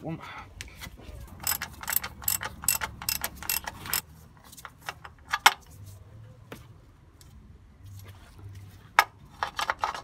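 Socket ratchet clicking and metal tools clinking while a very tight 19 mm sump plug is worked loose: a quick run of clicks between about one and a half and four seconds in, then a few scattered sharp clicks, the loudest about five and a half and nine seconds in.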